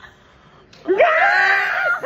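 A high-pitched human scream that begins about a second in, sweeps up in pitch and is held loudly for about a second.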